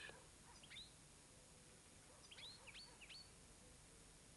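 Near silence with faint bird chirps: two short high chirps about half a second in, then four more between two and three seconds in.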